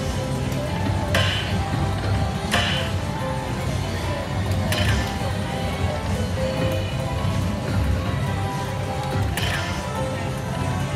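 Aristocrat Lightning Link slot machine playing its bonus-round music and reel sounds over steady casino background noise during its free spins. Short sharp hits come at about one, two and a half, five and nine and a half seconds, as symbols land.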